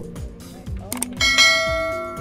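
A click, then a bright bell chime that rings out and fades over about a second and a half: the sound effect of an on-screen subscribe-button animation, over low background music.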